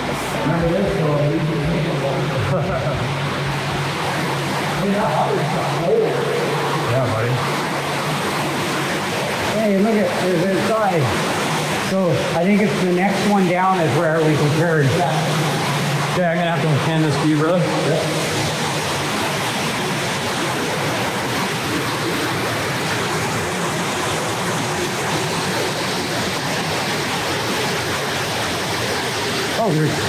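Water flowing and splashing through a concrete storm-drain tunnel: a steady rushing hiss. For about the first half it is overlaid with pitched sounds that fade out.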